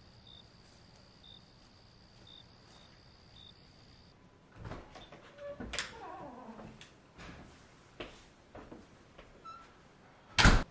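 Faint crickets trilling, with short chirps, that stop suddenly about four seconds in. Then a house door is opened and closed, with several knocks and clunks as people come through it.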